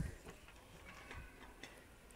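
Handling of wicker-wrapped glass candle holders on a store shelf: one dull knock at the start as a holder is set down, then a few faint light clicks and taps.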